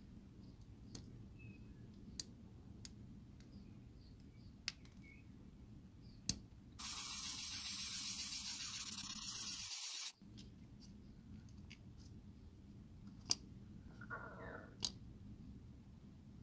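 A few sharp clicks of hobby side cutters snipping moulded detail off a small plastic model panel, then about three seconds of steady scratchy hiss as the plastic part is rubbed flat on sandpaper. A few faint ticks follow near the end.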